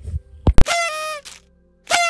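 A short music sting for an on-screen title card: a sharp click, then two short pitched notes, each sliding slightly downward, about a second apart.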